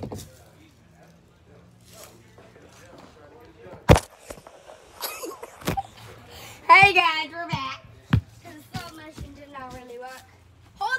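A few sharp knocks spaced a second or two apart, with a child's high voice raised briefly about seven seconds in.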